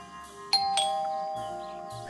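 Two-tone ding-dong doorbell chime: a higher note about half a second in, then a lower note, both ringing on and slowly fading.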